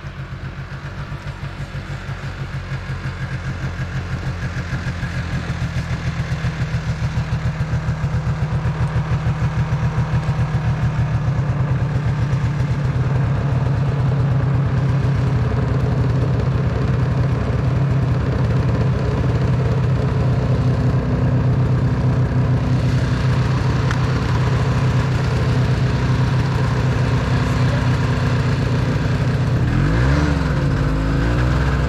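Snowmobile engine idling with a steady, fast pulsing beat, growing louder over the first several seconds and then holding level.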